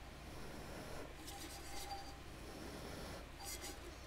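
Faint rustling and rubbing as gloved hands turn a tumbler over paper on a table, in a few soft bursts over a low steady hum.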